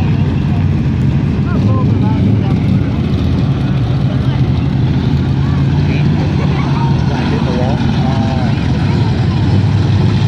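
Several pure stock dirt-track race cars running their engines on the track, a loud, steady, low engine drone that does not let up.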